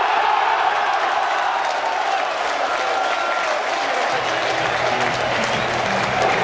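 Football crowd cheering and applauding a goal. A low steady hum joins about four seconds in.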